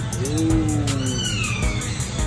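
A single drawn-out call that rises briefly and then slides slowly down in pitch, heard over background music.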